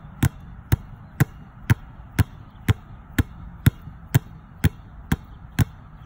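Two basketballs dribbled together on a concrete court, both hitting the ground at the same instant, so each pair lands as a single sharp bounce. The bounces come in a steady rhythm of about two a second.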